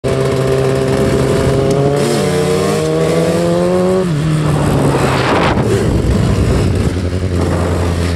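Two-stroke 250 motorcycle engine (a 2001 Suzuki RM250 engine swapped into a DRZ400) held at high revs during a wheelie, a steady tone that drops in pitch about halfway through. A brief rushing noise follows, then a lower steady drone.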